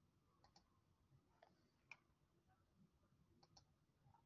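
Near silence, with three faint, short computer-mouse clicks spread across the few seconds.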